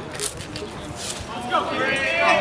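Spectators calling out in the stands of an outdoor baseball game. A raised voice starts about one and a half seconds in, and a brief sharp click comes near the start.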